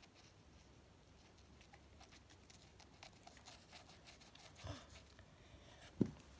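Near silence with faint, scattered scratchy ticks: a toy toothbrush rubbed against a plastic doll's mouth. A sharp knock of handling noise right at the end.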